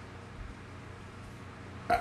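Quiet room tone with a faint short noise about half a second in, before a man's voice starts again right at the end.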